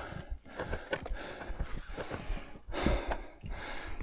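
A person breathing hard, with scattered small clicks and rustles of a mountain bike being handled.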